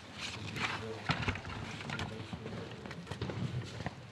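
Indistinct voices in a room, mixed with scattered sharp clicks and knocks.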